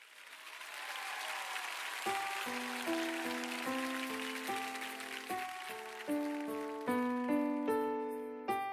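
Opening of a ballad: a soft hiss swells in out of silence, then sustained electric piano notes begin about two seconds in, with the note attacks getting sharper and more rhythmic near the end.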